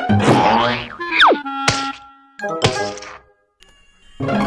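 Cartoon sound effects over music: a falling whistle glide, then two sharp hits about a second apart, each leaving a ringing tone. This marks a comic fall and landing in snow.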